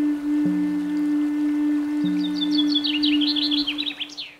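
Closing music: one long held low note with a softer lower note that starts again about every second and a half, joined about halfway through by a quick run of high bird chirps.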